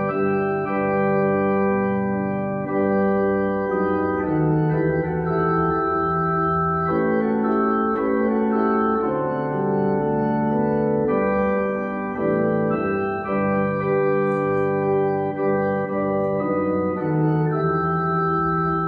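Digital keyboard played with an organ sound: slow, sustained chords that change every second or two.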